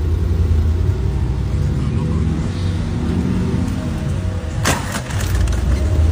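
Mercedes-AMG G63's engine running with a heavy low rumble, revving up and falling back a couple of seconds in. A single sharp bang comes near the five-second mark.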